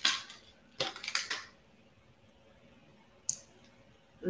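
Small plastic packet of beads crinkling and clicking as it is handled, in two short bouts within the first second and a half, then a single brief click about three seconds in.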